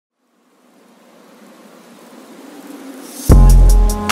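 Electronic music intro: a hissing swell grows steadily louder, then about three seconds in a heavy bass drop hits and a beat with quick high hi-hat ticks begins.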